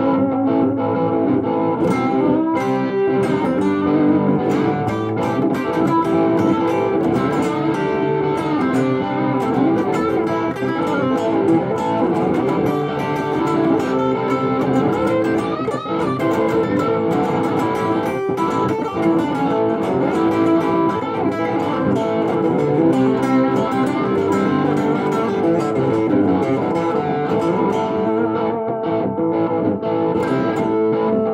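Telecaster-style electric guitar played through an amplifier, continuous loud playing with sustained notes throughout.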